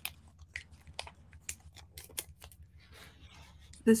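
Origami paper being folded by hand: an irregular string of small crackles and crinkles as the stiff, many-layered sheet is creased and pressed.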